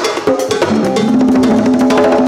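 A set of congas played by hand in a fast solo: rapid strokes across several drums, running together into a continuous roll about halfway through.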